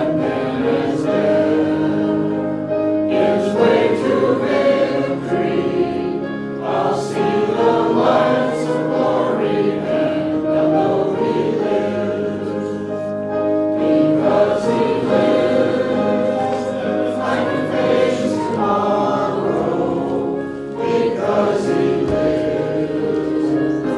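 Church choir singing a hymn in long held phrases, with brief breaths between lines.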